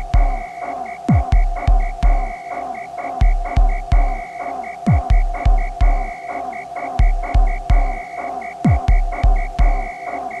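Gqom electronic dance track: heavy bass kick drums whose pitch drops, hitting in uneven, syncopated groups, over a steady droning tone and a stuttering high synth pulse.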